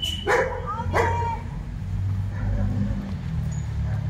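A dog barking twice, about a second apart, near the start, over a steady low rumble.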